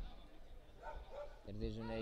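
A lull in the commentary: faint open-air background with a few faint, short calls about a second in. A voice starts up near the end.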